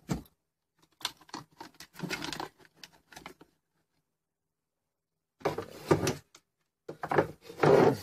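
Scattered clicks, knocks and rustles from hands moving wires and parts about on a workbench. There is a silent gap of about two seconds in the middle, and more handling near the end.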